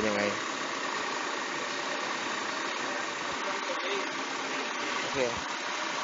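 Honda City's four-cylinder engine idling steadily with the hood open.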